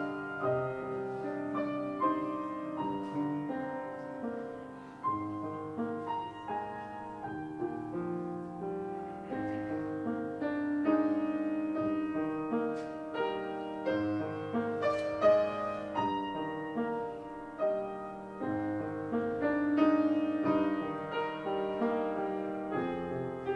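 Solo piano playing a slow prelude: a melody over held chords, each note struck and left to ring.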